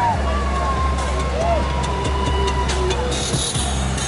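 Parade vehicles, pickup trucks and vans, driving slowly past with a steady low engine rumble, mixed with people's voices calling out.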